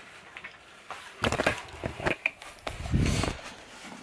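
Camera handling noise as the camera is picked up: a cluster of knocks and rubbing a little over a second in, then a low thud near three seconds.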